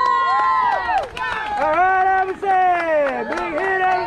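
Several spectators yelling and cheering at once, high voices in long drawn-out calls that overlap, with a few sharp claps among them.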